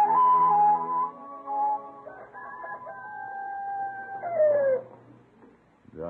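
A short music bridge ends about a second in. It is followed by a rooster crowing: one long call that slides down in pitch at the end.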